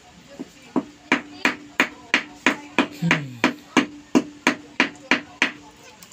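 Ceramic floor tile being tapped with the end of a wooden stick, about fifteen even knocks at roughly three per second, bedding the tile into fresh mortar to bring it level.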